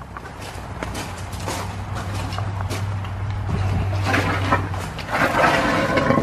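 An aquaponics water pump, just plugged back in, runs with a steady low hum. Water rushes and splashes into the fish tank, getting louder over the last couple of seconds as the system restarts.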